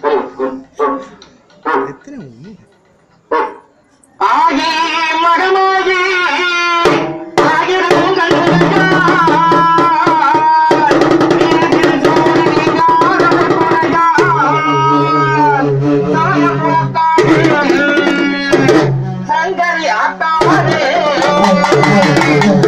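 Urumi melam drum ensemble playing: stick-beaten drums with a sustained, pitch-bending melodic line over them. The full ensemble comes in about four seconds in, after a few scattered beats, and plays on steadily.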